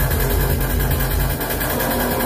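Loud live electronic music: a dense, noisy texture over heavy, sustained bass.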